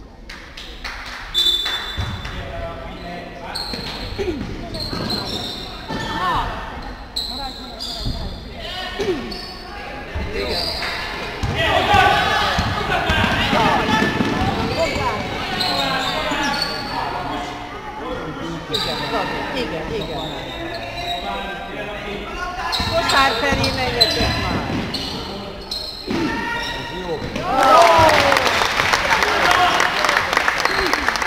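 Basketball being dribbled and bounced on a sports hall floor during a game, with players' shouts echoing in the hall. Near the end it gets louder, with a burst of shouting and noise from the crowd.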